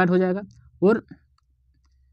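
A voice talking through roughly the first half-second, with one more short syllable just before the one-second mark. The rest is a pause with only a faint low hum.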